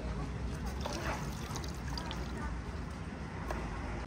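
Gloved hands handling marinated meat, with soft wet squelches and drips of marinade as pieces are lifted from the tub and pressed onto the pile in a large cauldron, over a steady low outdoor rumble.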